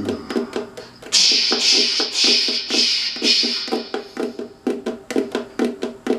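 Percussive tapping and knocking on the wooden body of a ukulele, with the strings left unplayed, in a steady rhythm of about five taps a second. A pulsing hiss runs over the taps for about three and a half seconds, starting a second in.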